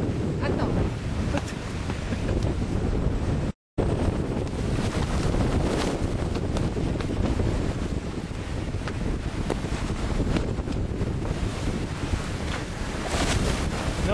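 Wind buffeting the microphone over the steady rush of sea water along a sailing yacht's hull as it sails through choppy water. The sound cuts out to silence for a moment about three and a half seconds in.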